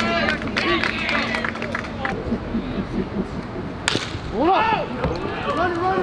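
People at a baseball game shouting and calling out across the field. A single sharp crack about four seconds in is followed by louder yelling.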